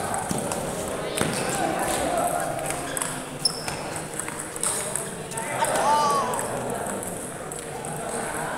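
A few sharp clicks of a table tennis ball struck by bats and bouncing on the table as a rally ends, over the murmur of voices in a large hall.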